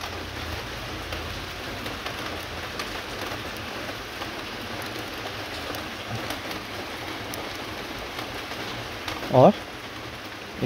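Steady, even hiss with faint scattered ticks.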